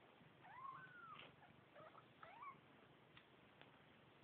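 Faint, high-pitched mewing of newborn Bengal kittens: one rising-and-falling mew about half a second in, then a few short squeaky mews around two seconds in.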